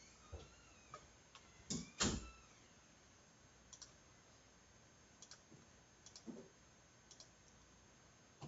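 Sparse clicks of a computer mouse and keyboard, with a louder pair of clicks about two seconds in and fainter single clicks after.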